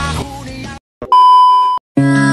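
Background song fading out under a second in, then after a brief silence a single steady high electronic beep lasting about two-thirds of a second, cut off sharply.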